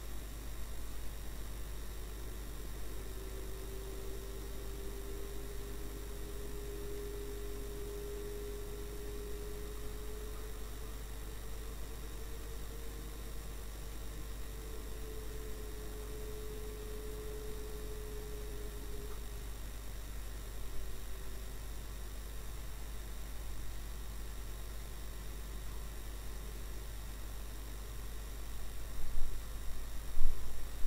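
Steady low drone inside a moving car, picked up by a dashcam microphone, with electrical hum. A faint tone slowly wavers up and down in pitch through the middle. A few louder bursts start just before the end.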